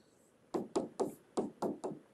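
Stylus tapping on a tablet screen while handwriting: a quick run of about seven short, sharp taps starting about half a second in.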